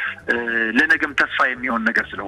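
Speech only: a person talking on a radio programme.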